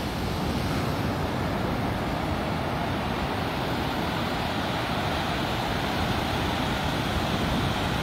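Ocean surf breaking on the shore, a steady, even rushing noise with no distinct single wave.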